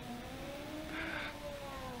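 Rally car engine revving through a hairpin, its note rising and then easing off, with a brief hiss about a second in.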